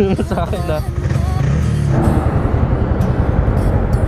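Motorcycle engine running with rapid, even firing pulses, joined about halfway through by a broader rush of noise.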